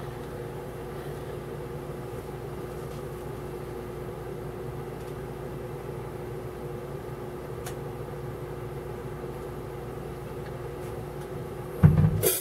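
Steady hum of a running machine in the room, a few held low tones that do not change, with a sharp knock just before the end.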